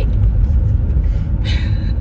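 Steady low rumble of road and engine noise inside a moving car's cabin. Near the end there is a short breathy burst.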